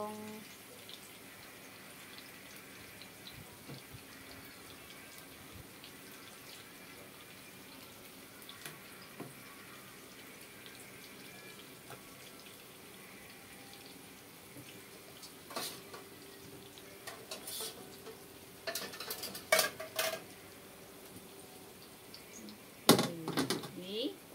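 Chinese eggplant frying in hot oil in a frying pan, a steady soft sizzle. From about two-thirds of the way through come scattered clicks and knocks of cookware, with a louder clatter near the end as a metal wok is handled.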